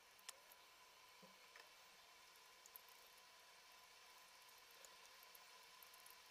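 Near silence, with a few faint light ticks of a stirring stick against a glass measuring cup as a gel is stirred.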